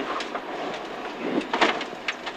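Peugeot 205 GTi 1.9 rally car driving at speed, heard from inside the cabin: a steady mix of engine and road noise, with a few sharp knocks about one and a half seconds in.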